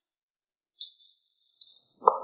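A high, thin ringing chime struck about a second in and again more softly near the end, each ring dying away: a dramatic sound effect.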